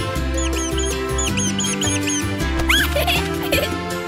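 Cartoon background music with a quick run of about eight short, high squeaks in the first half, then a fast rising whistle a little past halfway.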